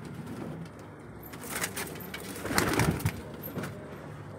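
Domestic pigeons cooing, with a louder, noisier burst of sound between about two and a half and three seconds in.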